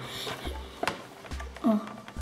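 Plastic parts being handled in a plastic tub, with one sharp click a little under a second in, then a short spoken "oh" near the end.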